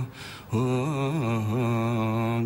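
A man singing unaccompanied in a low voice: after a brief pause about half a second in, he holds one long note that wavers at first and then steadies.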